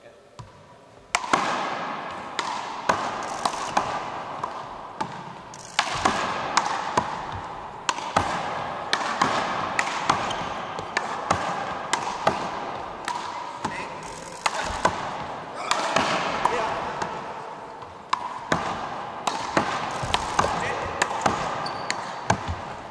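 One-wall big-ball handball rally: the rubber ball is struck by hand and hits the wall and floor in a long run of sharp smacks, echoing through a gymnasium. The smacks start about a second in and come every half second to a second.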